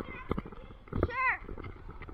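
Knocks and thumps of a jostled action camera, with a short high-pitched wavering voice a little after one second.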